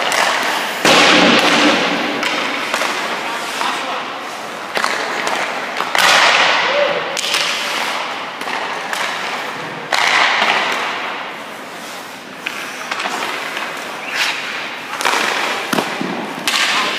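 Sharp hockey impacts on an indoor ice rink, four of them: about a second in, about six seconds in, about ten seconds in and near the end. Each rings out in a long fading echo in the arena.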